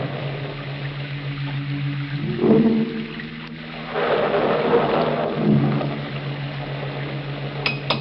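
Radio-drama musical bridge of sustained organ-like chords, which change pitch about two and a half seconds in and again about five and a half seconds in. Near the end a few sharp taps begin: the sound effect of a hammer chipping at concrete.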